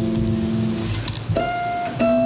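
Solo jazz guitar: a held chord rings and fades away, then a single clear, high note is plucked about a second and a half in and rings on. A low hum lies underneath.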